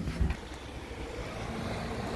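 A short low thump about a quarter second in, then a steady low rumble with handling noise as a hand-held camera is carried out of a lift car over the door sill into the lobby.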